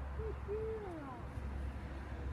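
Two low hooting calls: a short one, then a longer one that falls in pitch.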